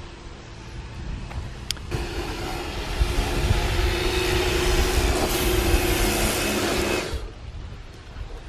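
Pressure washer running: a steady motor-and-pump hum with the hiss of the water jet. It starts suddenly about two seconds in and cuts off about a second before the end.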